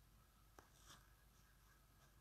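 Near silence: faint room tone, with one faint click a little past the middle and a soft brief rustle just after it.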